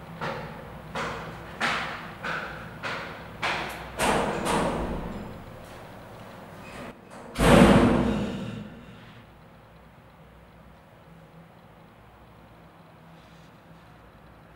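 A run of about eight thuds, one roughly every 0.6 s and growing louder. About 7.5 s in comes one much heavier bang that rings on for over a second before dying away.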